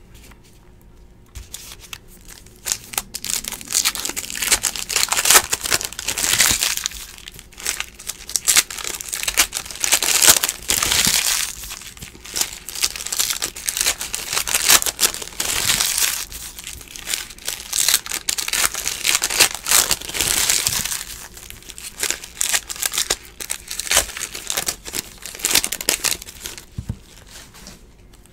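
Foil trading-card pack wrappers being torn open and crinkled by hand, an irregular crackling rustle in bursts. It starts about two seconds in and dies down just before the end.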